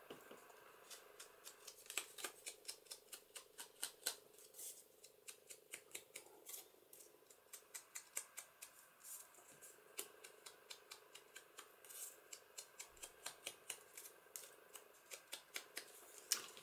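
Faint, quick scratchy strokes of an ink blending tool being dabbed and swiped along the edges of a paper strip, several strokes a second.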